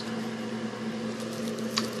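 Steady background hum of a running motor or appliance, with one faint click near the end.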